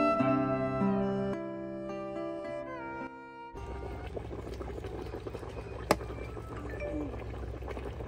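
Background music with plucked strings, cut off about three and a half seconds in. Then comes a pot of snakehead-fish porridge boiling, a low even bubbling, with a single sharp click of a utensil about six seconds in.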